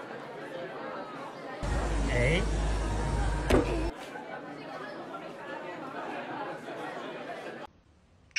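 People talking in a room, with one sharp click about three and a half seconds in; the sound drops away just before the end.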